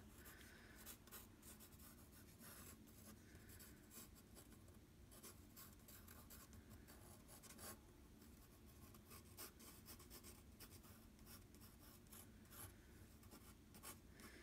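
A pencil sketching lightly on textured drawing paper: faint, irregular scratching strokes as the graphite moves across the sheet.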